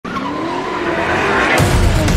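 Car tyres squealing in a wavering screech, then a deep boom about one and a half seconds in.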